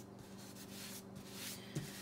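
Hands rubbing painter's tape firmly down onto thick watercolor paper: a soft, steady papery rubbing.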